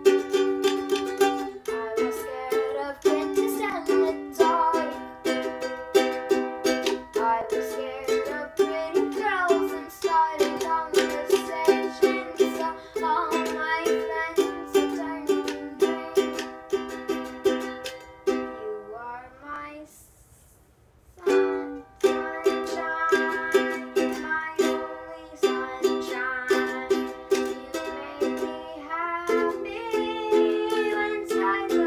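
Ukulele strummed in chords, a steady run of strums. About two-thirds of the way through, the playing breaks off and the last chord dies away for about two seconds before the strumming starts again.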